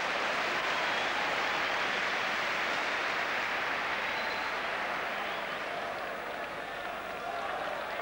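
Football stadium crowd, a steady wash of many voices that eases off slightly partway through.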